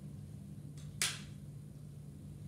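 One short, sharp snap about a second in from a backboard chest strap and its buckle being fastened, over a steady low room hum.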